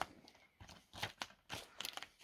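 Faint rustling and clicking of a paper leaflet and an open plastic DVD case being handled, in short scattered crackles.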